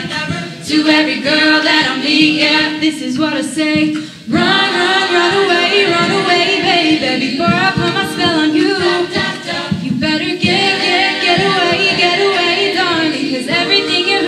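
A cappella group singing: a female lead voice over a mixed choir of backing singers, with no instruments. The voices drop back briefly about four seconds in, then come in full again.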